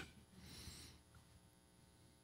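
Near silence: room tone in a pause between spoken lines, with one faint short hiss, like a breath, about half a second in.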